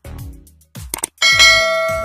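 A subscribe-animation sound effect: a short click, then a bright bell ding a little over a second in that rings on and slowly fades, over background music with a steady beat.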